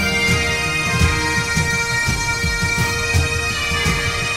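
Pipe band playing: Highland bagpipes sounding their steady drones under the chanter melody, with the band's drums keeping a steady beat.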